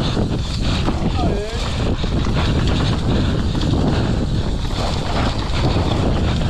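Wind buffeting a helmet-mounted action camera while a mountain bike rattles and clatters over rocks and dirt at speed on a downhill run. A brief wavering voice cuts through about a second in.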